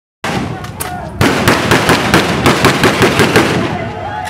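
Police rifle fired into the air in a rapid volley of sharp cracks, about six a second. It starts a little over a second in and dies away near the end. These are warning shots to disperse a crowd.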